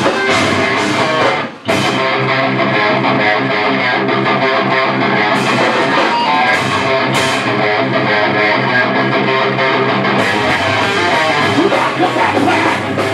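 Live heavy metal band playing loudly, with distorted electric guitars and drums. The band stops for a split second about a second and a half in, then comes back in, and crashing cymbals fill out the sound near the end.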